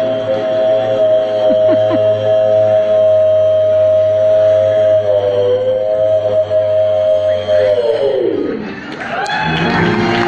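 Resonator guitar (dobro) played with a steel bar: a long held slide chord that wavers slightly about halfway through, then glides steeply down in pitch near the end.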